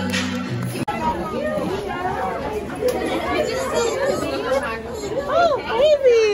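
Music with a steady bass that cuts off abruptly under a second in, then a crowded room of overlapping chatter, with children's high voices rising and falling near the end.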